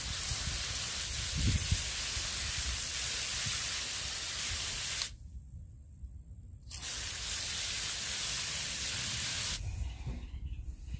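Water spraying from a garden hose nozzle onto a pile of freshly dug sweet potatoes on grass, a steady hiss. It cuts off suddenly about five seconds in, starts again about a second and a half later, and stops shortly before the end.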